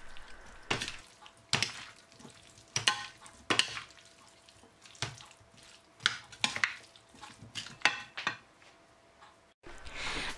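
A large spoon stirring and tossing a dressed cucumber and potato salad in a bowl, making about a dozen irregular scraping, stirring strokes.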